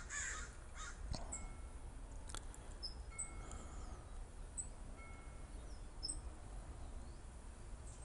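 Faint bird calls: several short high chirps and a few harsher calls, over a low steady hum.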